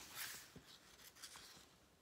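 Near silence, with a faint paper rustle shortly after the start as a picture-book page is turned, then a few light ticks of handling.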